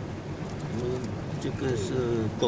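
A person's voice, low and drawn out with gliding pitch, like humming or murmuring, starting about half a second in, over the steady rumble of a car cabin on the move.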